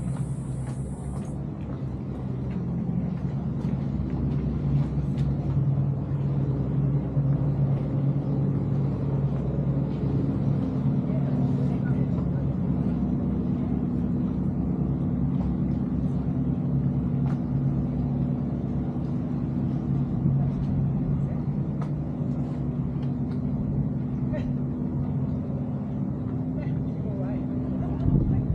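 Steady low hum of a vehicle or motor, holding several tones that shift in pitch now and then, with scattered light ticks over it.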